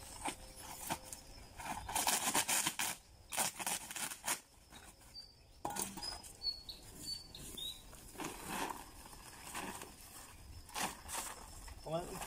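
Paper cement sack rustling and crinkling in irregular bursts as it is opened and handled, then tipped to pour the cement out onto the sand. A few short bird chirps sound partway through.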